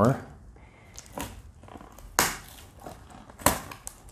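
Packing tape and parcel wrapping crackling and tearing as it is cut open with the cutter link of a bracelet multitool, with a few sharp snaps among quieter rustling.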